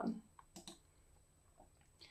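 The tail of a spoken word, then near quiet broken by a few faint, short clicks: one about half a second in, a quick pair just after, and another near the end.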